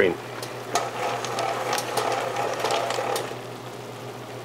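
Littleneck clam shells clicking and rattling against a stainless steel sauté pan as the pan of simmering clam sauce is worked, a rapid clatter from about a second in that dies away near the end over the sauce's low sizzle.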